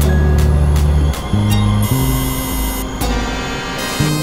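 Layered experimental electronic music, several tracks playing at once. Deep held drones shift pitch about every second under sharp clicks. A bright buzzing tone comes in about halfway and breaks off briefly near three seconds.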